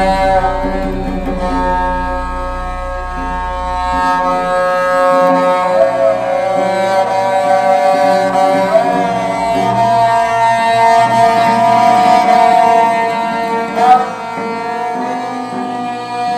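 Ensemble of bowed Sikh string instruments (tanti saaj), a peacock-bodied taus among them, playing a slow melody in Raag Gauri Cheti. The notes are long and sustained, with slides between pitches, over a steady drone that falls away about four seconds in.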